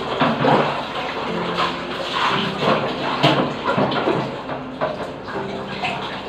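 Water running and splashing unevenly as someone washes at a bathroom washbasin.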